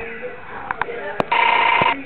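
A few sharp clicks, then a short, loud electronic ring or buzz with one steady pitch, lasting a little over half a second and cutting off suddenly near the end.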